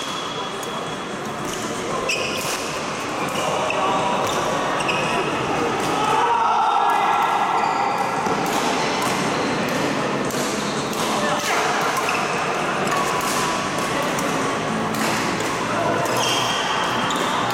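Badminton being played in a large, echoing sports hall: sharp racket hits on the shuttlecock and footfalls on the court floor, over a steady background of voices.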